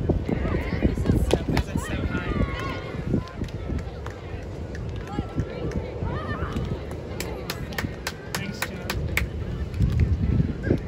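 Outdoor beach volleyball court sound: a heavy, uneven rumble of wind on the microphone, with players' voices calling out during the rally. A run of sharp clicks comes in the later part.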